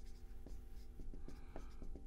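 Dry-erase marker writing on a whiteboard: a quick run of short, faint squeaking and scratching strokes as letters are written.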